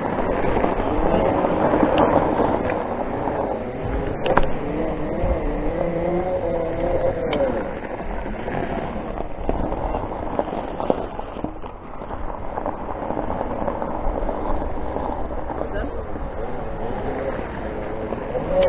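Off-road Segway electric drive whining, its pitch rising and falling with speed, over steady wind noise and knobbly tyres rolling on gravel.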